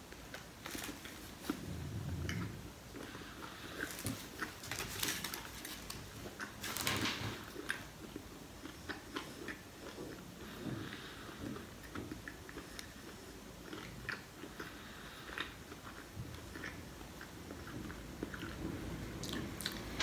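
A man biting into and chewing a sandwich in a soft bread roll: wet mouth sounds with scattered clicks and crackles. The biggest bites come about two, five and seven seconds in.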